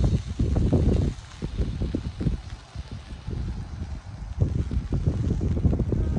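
Wind buffeting the microphone in gusts, a low rumble that eases off for about three seconds in the middle and picks up again.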